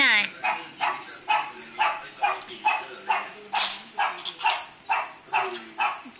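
A dog barking over and over in a steady rhythm, about two barks a second.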